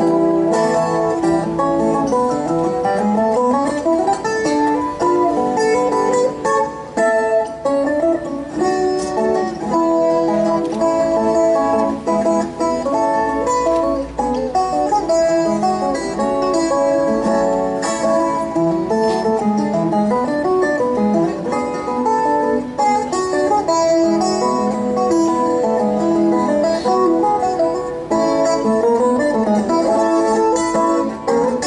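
Colombian tiple played solo, its steel strings in courses of three picked and strummed in a bambuco: a busy, continuous run of bright plucked notes and chords.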